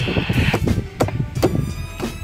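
Knocks and scraping as a wheel chock is pushed and wedged against a car tyre on a wooden ramp, with a short scrape at the start and several irregular knocks after it.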